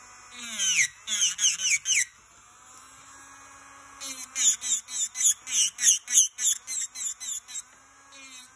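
SUNNAIL electric nail drill with a cone bit filing a nail in short strokes, each stroke a brief whine that falls in pitch as the bit bites. There are a few strokes in the first two seconds, a pause, then a steady run of about three strokes a second from about four seconds in until near the end.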